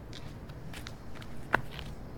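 A few light clicks or taps spread across two seconds, with one sharper, louder click about one and a half seconds in, over a steady low outdoor rumble.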